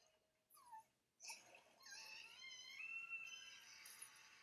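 Faint anime soundtrack: a girl's high-pitched crying, a short falling sob about half a second in, then a long wavering wail.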